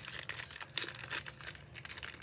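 Clear plastic packaging bag crinkling in the hands as it is turned over and worked open: irregular crackles, with one sharper crackle a little under a second in.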